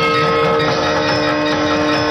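Loud theme music ending on a sustained held chord over a dense wash of sound, accompanying the title logo reveal.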